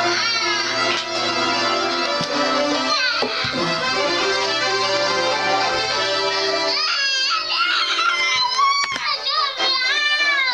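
Electronic keyboard set to a horn-section sound, played in held notes and chords. In the last few seconds a child's high voice wails over it.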